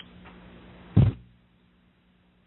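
A single short, loud thump about a second in, over a faint steady hum.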